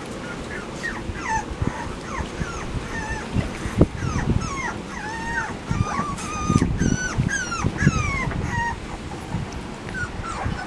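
Chocolate Labrador retriever puppies whimpering and squeaking: many short, high, curving cries that overlap, growing busier past the middle, with soft knocks underneath.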